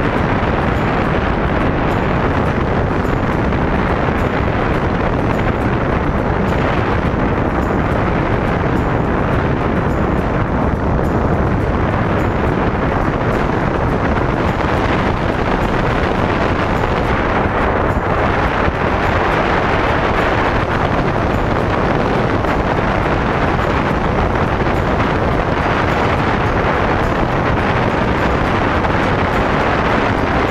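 Steady wind rushing over a wrist-mounted action camera's microphone as a tandem parachute pair descends under an open canopy.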